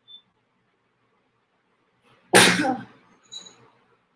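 A woman sneezes once, loudly, about two seconds in, with a short, fainter sound just after it.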